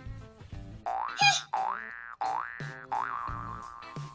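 Cartoon-style comedy sound effect: a string of about three rising, boing-like pitch glides, the last levelling off into a held tone, over light background music.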